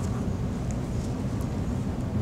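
A steady low rumble of room background noise, with no other event standing out.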